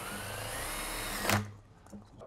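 Cordless drill driving a sheet metal screw through a metal saddle flange into a galvanized sheet-metal duct fitting. The motor whine rises in pitch for over a second, ends in a sharp crack as the screw seats, and the drill stops.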